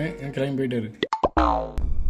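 Men talking at a table, then about a second in a few quick clicks and a short falling-pitch sound effect, edited into the dialogue.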